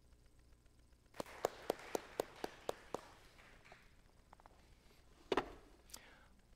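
A quick, even run of about eight light knocks, about four a second, over a faint rustle, then a single louder knock near the end.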